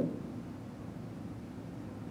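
Low, steady hiss of background noise on an open video-call audio line, with no other sound standing out.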